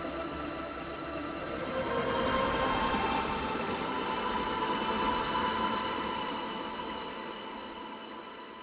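Electronic sound-design drone from a documentary soundtrack, with a fine buzzing texture under held tones; it swells about two seconds in and then fades out.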